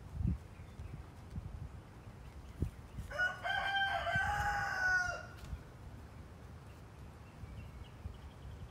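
A rooster crows once, a single call of about two seconds near the middle. A few soft low thumps come and go around it.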